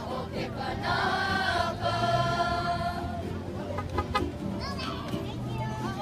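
A crowd of children and adults singing together, with long held notes.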